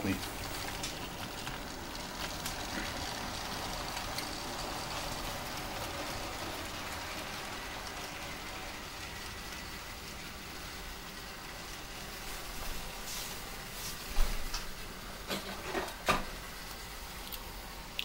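Model train, a Piko class 189 electric locomotive pulling heavily loaded wagons, running along the track: a steady rolling hiss of wheels on rail with a faint high motor whine. Several clicks and knocks come near the end.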